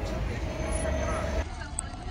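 Street traffic with a motor vehicle running, a low rumble and a steady hum, under crowd chatter; the sound cuts off abruptly about one and a half seconds in to quieter crowd noise.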